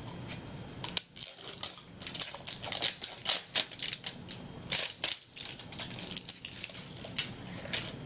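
Plastic wrapping of an L.O.L. Surprise toy ball being peeled and torn off, a rapid run of sharp crinkles and crackles starting about a second in.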